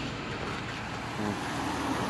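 Steady street traffic noise: an even hum of road vehicles with no single sound standing out.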